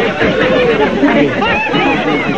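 Several people talking at once, with overlapping voices chattering.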